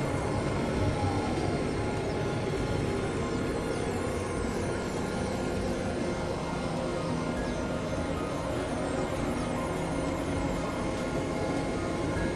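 Experimental electronic drone music: dense layers of sustained synthesizer tones over a low rumble, with many short falling high-pitched glides, holding a steady level throughout.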